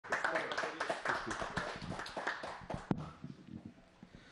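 Hands clapping in applause, with voices talking over it; the clapping thins out and stops about three seconds in.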